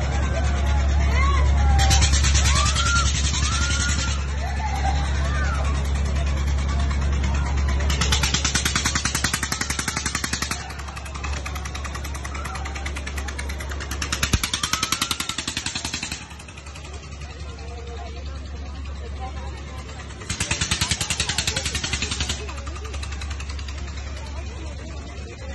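Fairground ambience: crowd voices over a steady low hum, with a loud rushing noise that swells for about two seconds roughly every six seconds.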